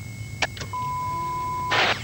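Television test tone played with colour bars: a click, then a steady single-pitch beep of about a second, cut off by a short burst of hiss near the end as the broadcast starts.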